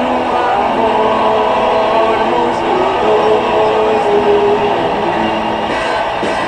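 Live performance of a psychedelic rock song by a band with an orchestra: a dense, loud wash of held chords and voices.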